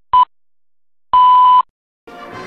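Electronic time-signal pips: steady high beeps spaced a second apart, a short one followed by a final longer beep held for about half a second, in the manner of a radio exact-time signal.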